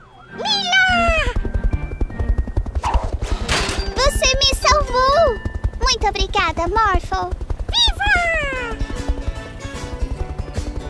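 Cartoon helicopter rotor sound effect: a fast, even low chopping that starts about a second in. Over it come several wordless vocal sounds that glide down in pitch, with background music.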